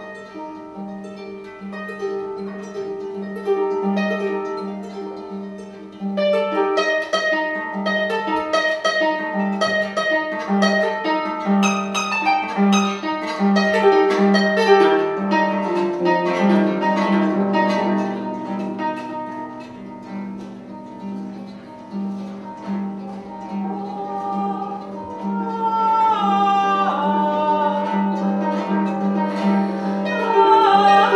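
Concert harp played solo: plucked notes over a low note repeated at an even pulse. Near the end, a woman's singing voice enters over the harp.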